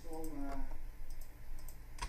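A few light clicks of a computer mouse, spaced irregularly, with a short bit of voice at the start.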